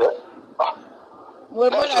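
Two brief sharp vocal-like sounds, then a person talking from a little past halfway.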